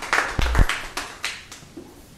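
An audience applauding a talk, the clapping thinning out and dying away over the second second. A couple of low thumps land close to the microphone about half a second in.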